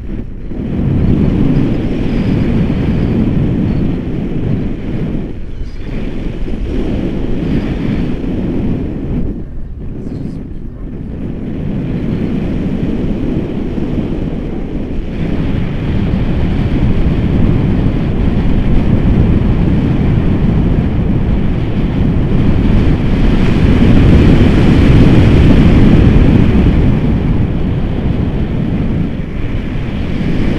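Airflow of a paraglider in flight buffeting the camera microphone: a loud, uneven low rushing that swells and eases, with brief lulls about five and ten seconds in and the strongest gusts a few seconds before the end.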